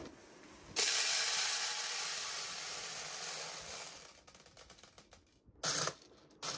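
A crackling, rattling rush starts suddenly about a second in and fades away over about three seconds, then scattered light clicks and a short loud clatter near the end, from work on a clear acrylic makeup organizer.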